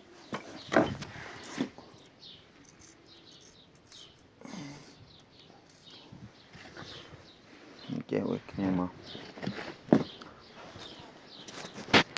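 Indistinct voices in the background with birds chirping, and a few sharp knocks, the loudest near the end.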